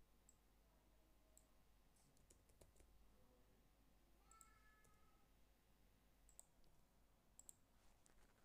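Near silence with faint, scattered clicks of computer keyboard typing and mouse clicks.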